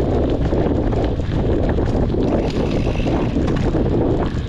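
Wind rushing over an action camera's microphone on a moving mountain bike, with the tyres rumbling over dirt singletrack and small clicks and rattles from the bike.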